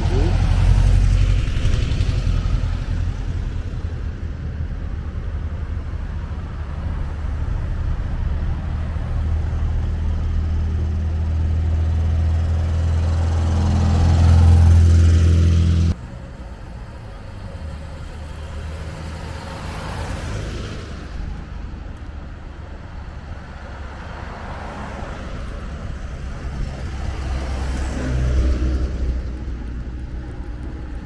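Classic cars and vans driving past on a road. A loud, steady low rumble fills the first half and cuts off suddenly about halfway through. After that the traffic is quieter, and passing vehicles swell up twice.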